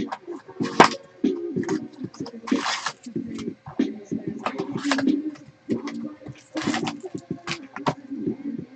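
Cardboard box flaps being opened and foil-wrapped trading-card packs slid out and handled, giving about four short, sharp rustling scrapes.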